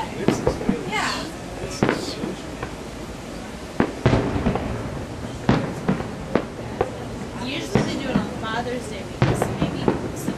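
Fireworks display: aerial shells bursting in a dozen or so sharp, irregularly spaced bangs, some in quick pairs.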